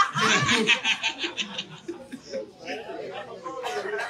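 Laughter after a joke: a loud burst of rapid, pulsing laughs in the first second or so, then softer, scattered chuckling.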